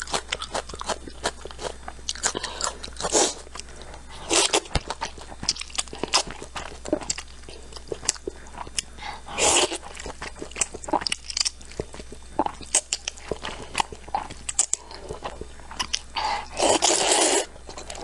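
Close-miked eating sounds: noodles slurped from a spicy broth and chewed wetly. Many small mouth clicks run throughout, broken by several longer slurps, the longest and loudest near the end.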